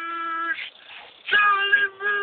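A singing voice holding long, steady notes: one at the start, a short break, then another note that begins abruptly about two-thirds of the way in.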